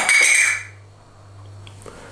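Clinking and clattering of hard objects being handled on a table, stopping about half a second in, followed by a faint low hum.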